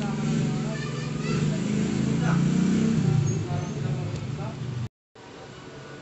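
A steady low hum, like a running motor, with indistinct voices behind it. The sound cuts out completely for a moment near the end and comes back quieter.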